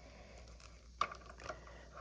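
Faint handling of a plastic Jada Street Fighter Chun-Li action figure as her legs are posed, with one sharp click about a second in.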